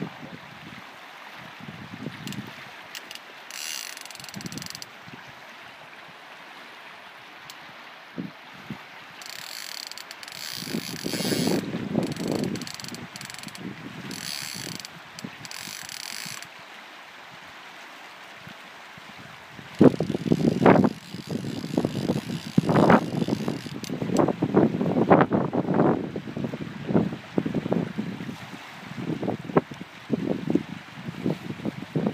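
Fly reel's click-and-pawl drag ratcheting in three bursts of a few seconds each while a hooked salmon is played. In the last third the reel is covered by louder, irregular low rumbling.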